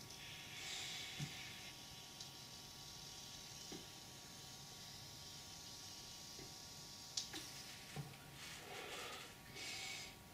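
A man drawing on an e-cigarette (an MVP battery with a dual-coil cartomizer): a soft hiss of the inhale in the first two seconds or so, a few small clicks, then a faint breathy exhale near the end.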